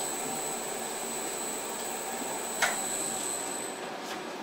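Mirror-o-Matic mirror-making machine running: a steady motor noise with a thin high whine as the turntable carries the glass mirror under the overarm tool. A single sharp click comes about two-thirds through, and the high whine stops just at the end.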